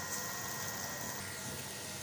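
Onions and garlic sizzling in hot oil in a metal pot, a steady hiss.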